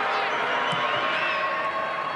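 Broadcast stadium ambience of a thin crowd: a steady murmur with a few faint wavering calls as a set shot at goal is in the air.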